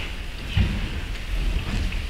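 Footsteps on a wooden stage floor: a few soft thuds over a low, steady rumble of the hall.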